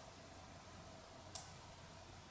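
One short, faint click a little past halfway through, over near-silent room tone with a low hum: a computer mouse click while a colour slider in a photo editor is moved.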